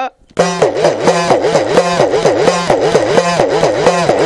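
Udukkai, a small hourglass-shaped hand drum, played in a fast steady rhythm of about five or six strokes a second, starting just under half a second in. Its pitch dips and rises again and again as the lacing is squeezed and released.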